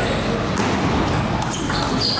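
Table tennis rally: the ball clicking off the bats and bouncing on the table in quick succession, over background chatter.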